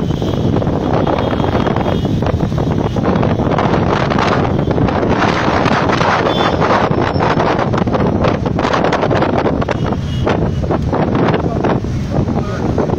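Heavy wind buffeting on the microphone from a moving vehicle, over the steady engine rumble of a group of touring motorcycles riding close behind.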